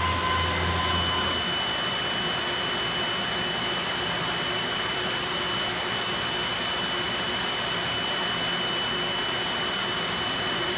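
Flatbed cutting table running, its vacuum hold-down blower making a steady rushing sound with a high steady whine over it. A low hum drops out about a second and a half in.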